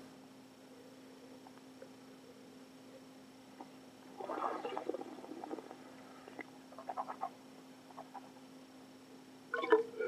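Mouth sounds of wine tasting: a noisy slurp of wine drawn in with air about four seconds in, then a few light clicks of a glass and metal cup being handled, and a short burst near the end as the stainless steel cup is held to the mouth. A low electrical hum runs underneath.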